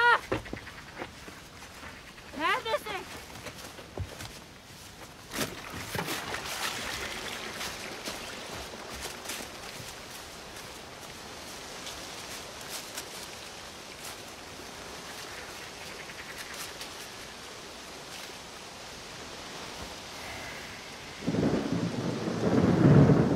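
Film storm ambience: a steady rushing hiss with scattered ticks sets in about five seconds in, and a loud, deep thunder rumble starts near the end. Two short rising calls sound in the first three seconds.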